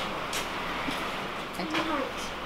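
Steady room noise with a few small clicks, and a brief murmur of a voice near the end.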